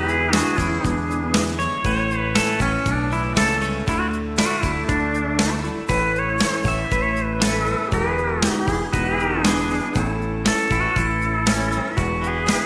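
Instrumental break of a country song: a steel guitar plays a solo with sliding, bending notes over a steady drum beat, bass and rhythm guitar.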